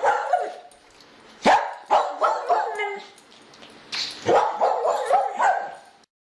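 A dog barking in several short bouts of sharp, pitched barks.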